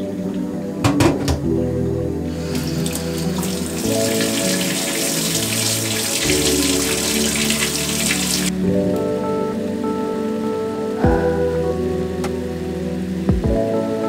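Cold water from a kitchen tap running over a boiled egg into a steel sink for about six seconds, then shut off abruptly. The water is cutting the egg's cooking short so the yolk stays creamy. A few light clinks come about a second in, and background music plays throughout.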